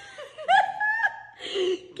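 People laughing, with short rising vocal cries and a breathy burst of laughter near the end.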